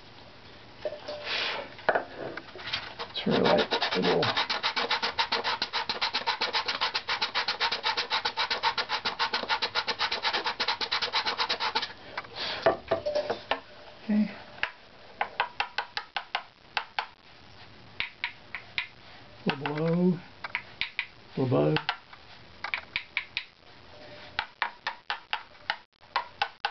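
A hand scraper scraping the inside of a violin back plate, thinning the wood to tune the plate's tap tone. It makes a quick, even run of strokes, about six a second, for several seconds, then slower single strokes with pauses.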